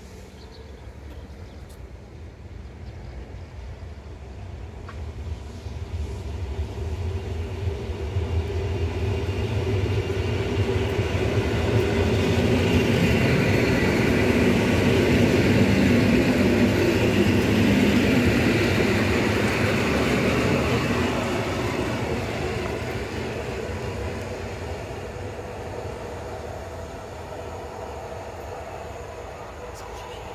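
Old PKP class EN57 electric multiple unit pulling into a station platform: wheels rumbling on the rails with a motor hum. The sound grows louder, is loudest about halfway through as the train rolls past, then fades as it slows.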